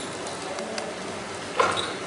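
Steady room noise in a hall, with one short pitched sound, like a brief voice or microphone noise, about one and a half seconds in.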